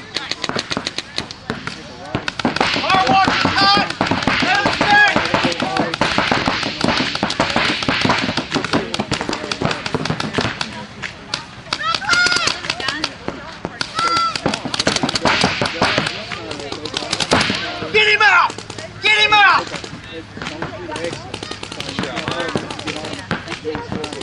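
Paintball markers firing long, rapid strings of shots, the pops coming many to the second, with players' voices shouting over them at several points.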